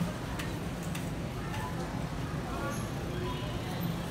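Supermarket ambience: indistinct chatter of shoppers over a steady low hum, with scattered light clicks.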